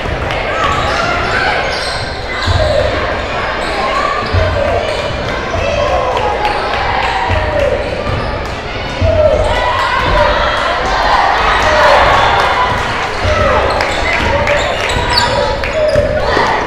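Basketball dribbled on a hardwood gym floor, irregular bounces every second or two, under crowd and player voices and shouts echoing in a large gym.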